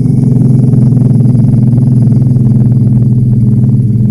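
A dog snoring in its sleep: one long, loud, low rattling snore held at a steady pitch.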